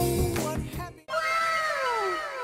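Background music that dies away and cuts off about a second in, followed by an edited-in sound effect: a falling tone repeated several times, each repeat fainter, like an echo.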